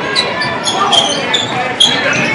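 Live basketball game sounds on a hardwood court: about six short high-pitched squeaks, typical of sneakers, and the ball bouncing, over steady crowd chatter in the gym.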